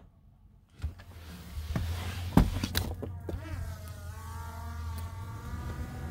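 A few clicks and knocks, the loudest about two and a half seconds in, then a quadcopter drone's propellers whine over a low hum, the pitch wavering up and down.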